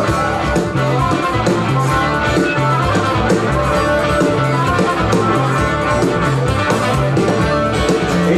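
Live Celtic folk-rock band playing an instrumental passage between verses: strummed acoustic guitar and electric guitar over a steady, repeating bass line, loud and even throughout.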